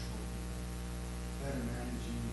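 Steady electrical mains hum, a low buzzing tone with a faint hiss over it, picked up in the recording's audio chain.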